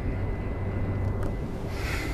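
Interior running noise of a Class 707 Desiro City electric multiple unit on the move: a steady low rumble with a thin, faint high tone over it. A short hiss comes near the end.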